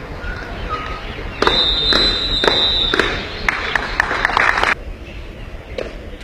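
Parade-ground drill of a border retreat ceremony: sharp boot stamps from a guard's high-kick march, under a loud burst of noise with a high steady tone that starts about a second and a half in and cuts off abruptly near five seconds.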